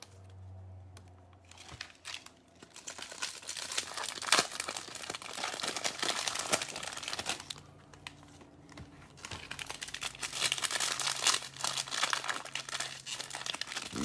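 Foil trading-card pack wrappers crinkling and tearing as packs are opened, with cards being handled. The crackling is irregular and comes in spells, with quieter lulls at the start and about halfway through.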